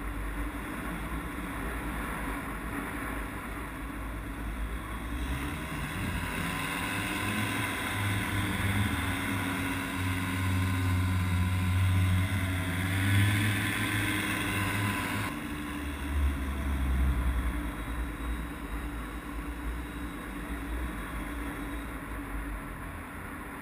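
Paramotor engine and propeller running in flight. About five seconds in it runs louder and higher as the throttle opens, then drops back abruptly about fifteen seconds in.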